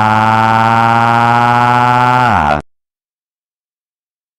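A man's shouting voice held on one low note, the stretched-out end of an angry shout. It holds steady, then slides down in pitch and cuts off abruptly about two and a half seconds in.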